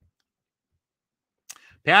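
Near silence, broken about one and a half seconds in by a single short click, then a man starts speaking.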